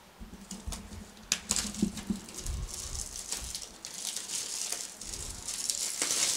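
Plastic shrink wrap crinkling and tearing as it is peeled off a sealed cardboard box of trading cards, with scattered sharp clicks from the box being handled.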